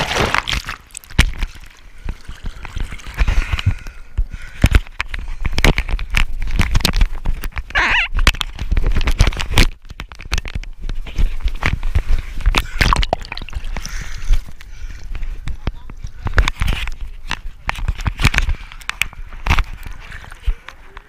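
Seawater splashing and sloshing around a small camera held at the nose of a surfboard, with many irregular knocks and rubs from a hand on the camera housing over a fluctuating low rumble.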